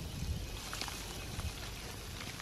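A weed being pulled up by its roots from mulched garden soil: faint rustling of leaves and a few soft crackles over a low rumble.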